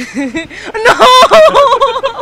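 A woman laughing loudly in a run of quick, high-pitched peals, loudest from just under a second in to near the end.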